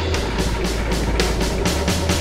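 Electroacoustic music played live from electronics: a dense, noisy texture over a steady low drone, pulsed by rapid, even high-pitched clicks about four or five times a second.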